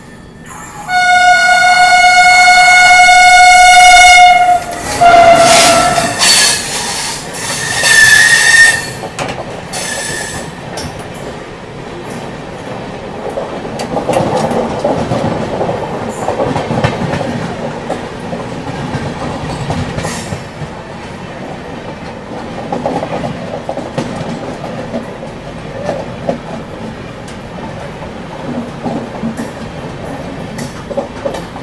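A train horn sounds one long blast about a second in, a shorter one soon after and a brief higher toot, as an oncoming train meets the moving train. The passing coaches then rush by on the next track, their wheels clattering over the rail joints, heard from beside the open side of the train.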